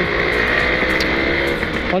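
Motorcycle running steadily on the road while being ridden, its engine sound mixed with riding noise.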